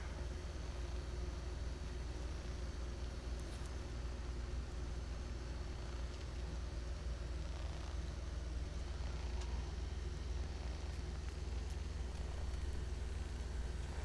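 A steady low hum with a faint hiss, unchanging, with no distinct knocks or other events.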